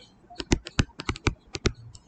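A stylus tapping and clicking on a tablet while a word is handwritten in digital ink: about a dozen sharp, irregular clicks.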